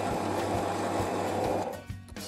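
Bench drill press boring into a pine block: a steady cutting noise from the bit in the wood that fades out shortly before the end. Background music with a steady beat plays underneath.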